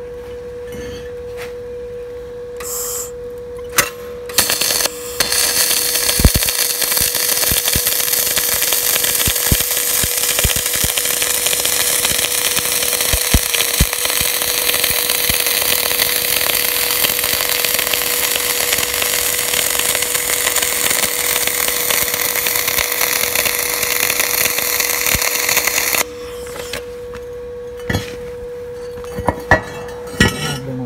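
MIG welding arc on steel channel. A couple of brief arc starts come about four seconds in, then a steady crackling weld runs for about twenty seconds and cuts off suddenly near the end, over a steady hum.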